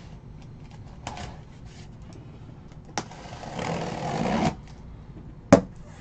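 Handling sounds from opening a sealed cardboard case of trading-card boxes: a few light clicks and knocks, a rustling scrape of about a second midway, and a sharp click near the end.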